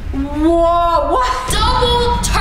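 A woman's voice singing a short, drawn-out phrase of long held notes that glide and step upward, over background music.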